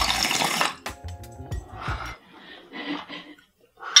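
Water bubbling in a bong as a hit is drawn through it, in uneven spells that stop shortly before the end.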